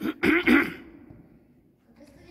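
A person clearing their throat twice in quick succession in the first second.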